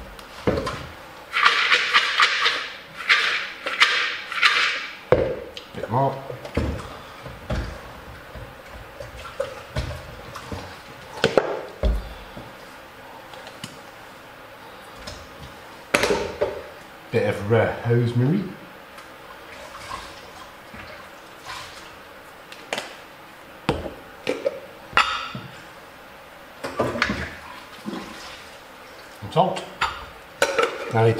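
Olive oil poured from a bottle into a bowl of almonds, a hissing trickle lasting a few seconds near the start, followed by scattered knocks and clinks of bottles and jars being handled and set down on a kitchen worktop.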